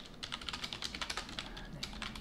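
Computer keyboard typing: a fast, continuous run of key clicks.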